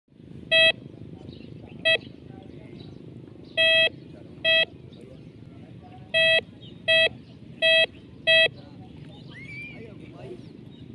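Metal detector sounding its mid-pitched target tone in eight short, loud beeps at uneven intervals as the coil sweeps over a buried metal target in shallow water. A steady low background noise runs beneath.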